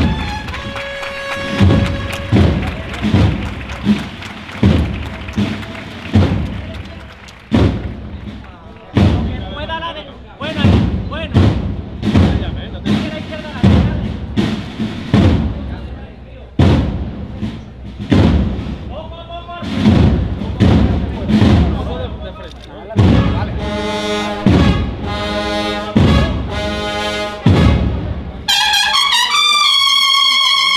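A Spanish cornet and drum band (banda de cornetas y tambores) plays a slow processional march. Drums beat about once a second for most of the stretch. The cornets build up in the last several seconds and come in loudly near the end.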